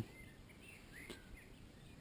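Faint outdoor background with a few small bird chirps, short and high, scattered through the quiet.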